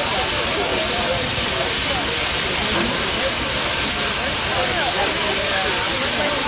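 Santa Fe 3751, a 4-8-4 steam locomotive, standing at rest and hissing steam steadily, with the chatter of a crowd around it.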